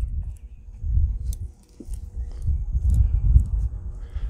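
Irregular low rumble on the microphone, with a few faint clinks from the chainsaw chain as it is worked around the bar by a gloved hand.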